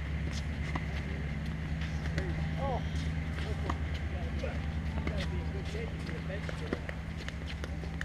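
Tennis balls struck by rackets and bouncing on a hard court during a doubles rally: sharp pops at irregular intervals, about one a second, over a steady low hum, with faint voices from around the courts.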